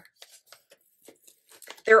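Faint paper rustles and small ticks from handling a sticker book's pages as a sticker sheet is taken out. A woman's voice says a word near the end.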